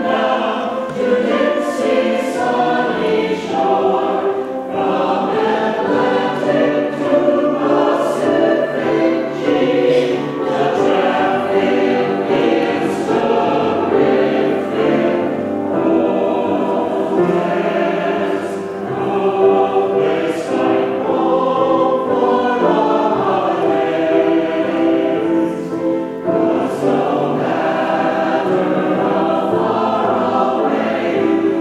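Mixed-voice community choir of men and women singing together without a break.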